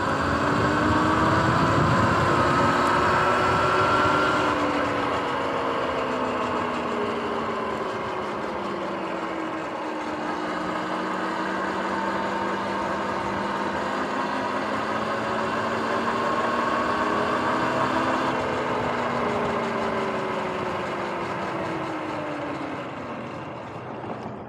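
Sur-Ron X electric dirt bike's motor whining as it rides, the whine rising and falling in pitch several times with speed, over steady wind and road noise.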